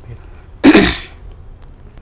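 A man coughs once: a single loud, sharp burst a little over half a second in.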